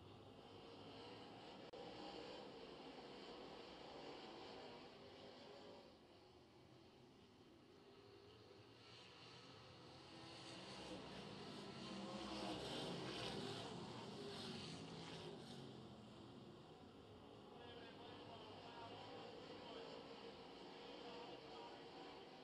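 Faint sound of dirt late model race cars running around the track, growing louder about halfway through as a car passes close by, then fading back.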